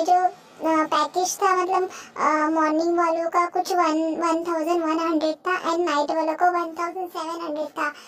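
A female voice singing a song alone, without accompaniment, in long held notes that waver in pitch, broken by short pauses between phrases.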